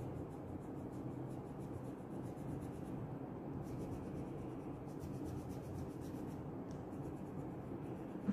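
Crayon rubbing on paper in steady, quick colouring strokes as a shape is filled in.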